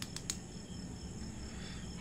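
A steady high-pitched background trill, insect-like, with a few light clicks near the start as small electronic parts are handled.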